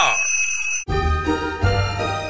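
A kitchen-timer bell ding sound effect rings briefly, cutting off sharply a little under a second in, and music starts straight after.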